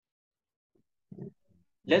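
Dead silence for about a second, then a short low vocal sound from a man, like a brief 'uh' or hum, and the start of his speech near the end.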